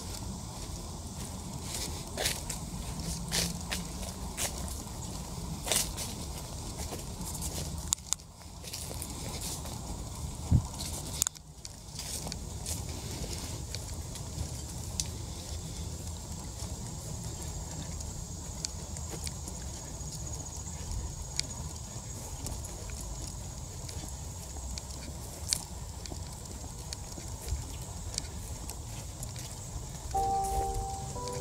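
Outdoor handheld-camera sound: a steady low rumble of wind on the microphone, with scattered sharp clicks and a few louder knocks. It briefly drops out twice, about eight and eleven seconds in.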